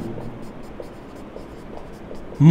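Marker pen writing on a whiteboard: faint scratchy strokes as text is written.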